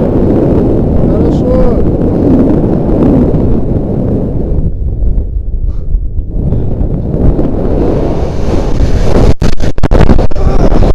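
Wind buffeting an action camera's microphone at the top of a tall chimney, a loud, low, steady rumble. It briefly thins around the middle, then grows louder with sharp breaks near the end as the jumper falls and swings on the rope.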